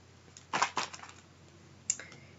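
Clear plastic packaging crinkling as a bagged roll of tape is handled and set down on a cutting mat: a short cluster of crinkles and clicks about half a second in, then a single sharp tick near the end.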